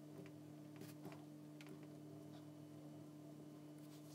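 Near silence: room tone with a steady low electrical hum and a few faint, short clicks.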